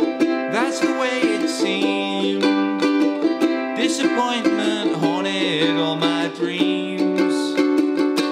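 Kala resonator ukulele strummed in a down, down, up, up, down, up pattern through C, G and D7 chords, with a man singing the melody over it.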